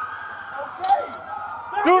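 Police siren wailing in the background, a single tone slowly rising and then holding, between an officer's shouted commands. A shout begins at the very end.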